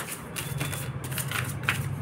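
A deck of tarot cards being shuffled by hand: a string of short, irregular card snaps and slides.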